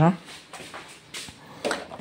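Freezer drawer of a fridge-freezer being pulled open near the end, after a few faint handling sounds.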